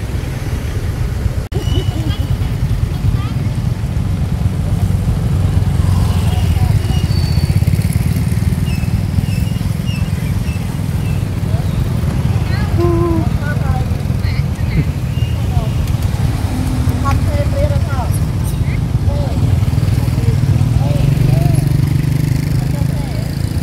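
Steady low rumble of motorbike and car traffic on a nearby road, with faint voices in the background.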